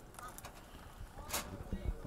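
Quiet open-air ambience of spectators around a bowling green, with faint voices and one brief sharp sound just past halfway.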